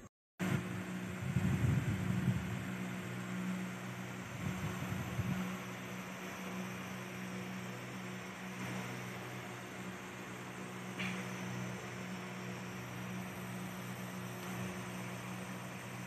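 PRODIY Artic USB mini evaporative air cooler's fan running, a steady hum under a wash of air noise. Louder low rumbles come twice in the first few seconds.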